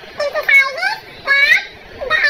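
A high-pitched, child-like voice in a few quick, gliding syllables, then a short pause near the end.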